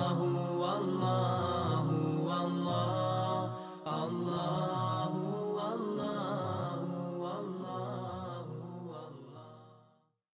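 Melodic chanted vocal music with long held notes. It dips briefly a little under four seconds in and fades out at the end.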